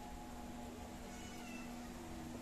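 A faint, brief high-pitched whimper from a puppy a little over a second in, over a steady low hum.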